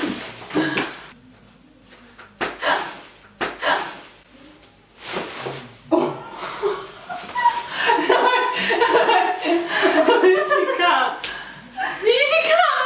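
A thick wad of plastic cling wrap crackling and rustling in several short bursts as it is cut off with scissors. From about halfway through, women laughing.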